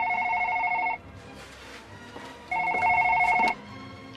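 Electronic office desk telephone ringing twice, each ring a warbling two-tone trill about a second long, with a pause of about a second and a half between.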